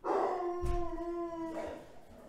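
A pet dog howling: one long, even-pitched howl lasting about a second and a half.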